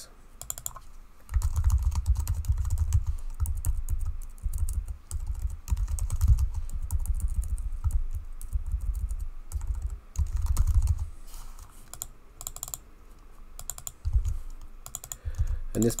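Computer keyboard being typed on: quick, irregular key clicks in short runs, with a low rumble underneath for most of the first eleven seconds.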